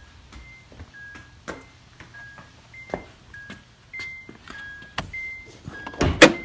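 A Honda Odyssey minivan's warning chime repeating as an alternating two-note ding-dong, a high note then a lower one, about every half second, sounding with the driver's door open and the headlights on. A few soft knocks come in between.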